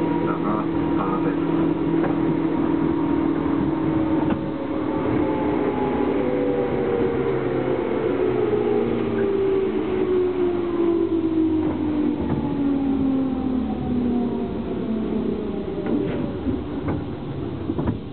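Inside a 205 series electric train in motion: wheel and running noise under a traction motor whine that falls slowly and steadily in pitch as the train slows.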